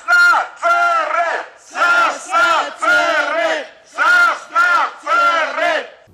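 Protest chant: a man shouting slogans through a megaphone with a crowd of protesters joining in, short shouted phrases repeating in a steady rhythm.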